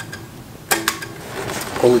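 A sharp click about two-thirds of a second in, from hands handling an unplugged electric guitar, with a man's voice starting near the end.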